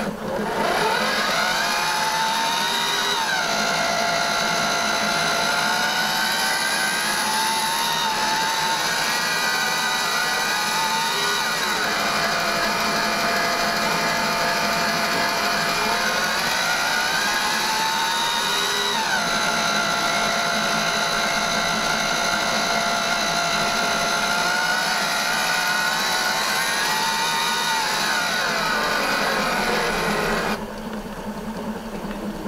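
Vacuum cleaner motor running loud and steady. Its whine sinks and rises again in pitch about every eight seconds as the airflow changes.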